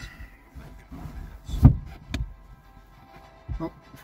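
Mattress cushions and wooden bed boards being shifted and set down, with rustling handling noise, a sharp knock about one and a half seconds in, and softer knocks after.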